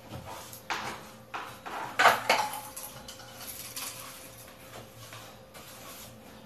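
Broom sweeping a floor in a series of short brushing strokes, the loudest about two seconds in.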